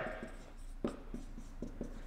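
Dry-erase marker writing on a whiteboard: a string of faint short taps and strokes as letters are drawn, the sharpest tick a little under a second in.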